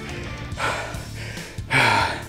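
A man breathing hard, with two heavy gasping breaths about a second apart: winded right after a minute-long all-out set of deadlifts. Background music plays underneath.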